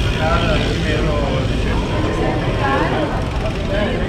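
Street ambience: voices of passers-by talking over a steady low rumble.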